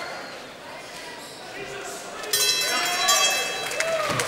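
The timekeeper's end-of-fight signal sounds suddenly about two and a half seconds in, a high-pitched tone held for over a second, over arena crowd noise.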